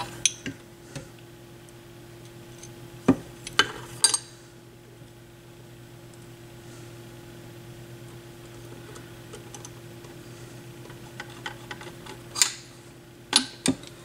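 A few sharp metallic clicks and taps of a small screwdriver and screw against the metal tonearm mount of an AR XB turntable, a cluster about three seconds in and more near the end, over a steady low hum.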